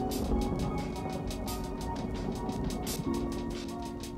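Background music with a steady beat, over a Ryobi cordless impact driver driving a screw into a 2x6 board. The driver's running noise stops about three seconds in.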